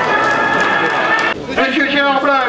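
A man's voice over an arena loudspeaker, with no words that can be made out. The sound breaks off suddenly about one and a half seconds in, then a voice starts again.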